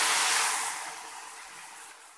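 Hot oil with fried cumin seeds (a tadka) poured into simmering kadhi, sizzling loudly at first and then dying away over the next second or two.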